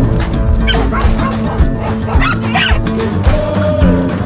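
Background music, with a dog yipping in high-pitched bursts over it about a second in and again just after two seconds.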